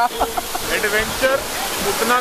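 Men's voices talking over the steady rushing noise of a waterfall.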